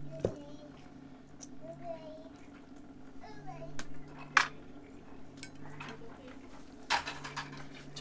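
A knife working raw wild boar meat on a glass tabletop, with three sharp clinks of the blade against the glass and the stainless steel bowls, the loudest about halfway through.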